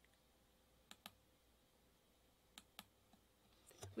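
Near silence with two pairs of faint, sharp clicks, one pair about a second in and another about two and a half seconds in.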